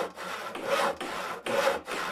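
Hand saw cutting through wood: about three rasping strokes, each a few tenths of a second long.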